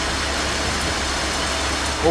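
Jute mill processing machinery running: a steady, even mechanical noise with a low hum underneath.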